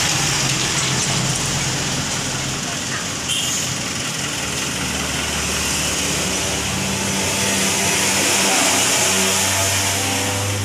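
A motor engine running steadily, its low hum shifting in pitch a few times, with indistinct voices in the background.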